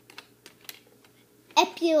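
A few faint, scattered clicks in a quiet room, then a girl's voice says a word about a second and a half in.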